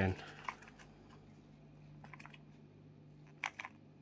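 A few light, sharp clicks and taps from handling a wooden stir stick and the work surface with a gloved hand, the loudest pair near the end, over a steady low hum.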